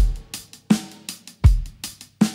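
Drum-kit break in a children's song: a bass drum beats about every three-quarters of a second, with lighter, sharper hits in between, while the melody and singing drop out.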